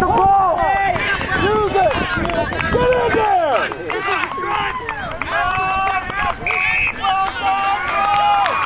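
Overlapping shouting voices from the players in a rugby ruck. About six and a half seconds in, one short referee's whistle blast cuts through.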